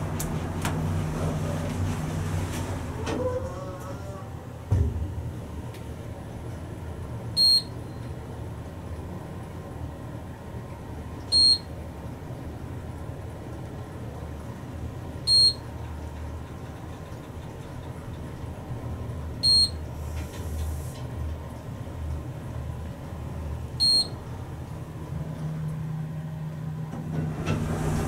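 Otis traction elevator car travelling slowly down with a steady low ride hum. A short electronic floor-passing beep sounds five times, about every four seconds. There is a thump about five seconds in as the car gets under way.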